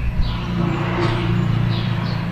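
A motor running with a steady low hum that swells slightly about halfway through.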